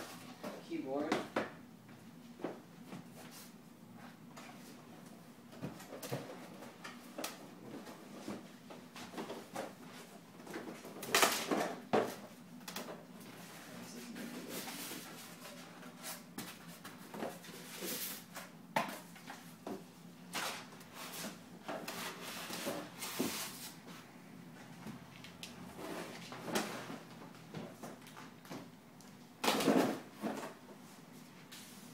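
Cardboard shipping box and foam packing blocks being handled: repeated scraping, rubbing and knocking of cardboard and foam, loudest about a third of the way in and again just before the end.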